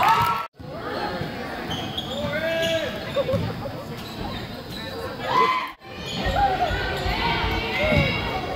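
Gym sounds of a girls' basketball game: spectators and players shouting and calling over the play, with the ball bouncing on the hardwood floor. The sound drops out suddenly twice, about half a second in and just before six seconds, where the highlights are cut.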